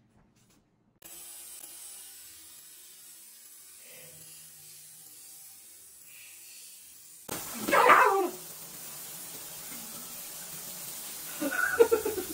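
Water from a kitchen pull-down faucet running steadily into a stainless steel sink, starting about a second in. About seven seconds in it gives way to a shower running, with one loud animal-like cry and a few shorter cries near the end.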